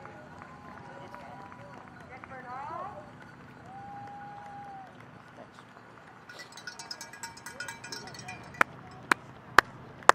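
Steady hand-clapping from a spectator cheering runners on, about two sharp claps a second, starting near the end. Before it, faint voices and a brief rapid jingling.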